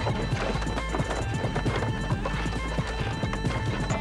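Background music with steady held tones, overlaid with a busy, uneven clatter of quick knocks, like clip-clop.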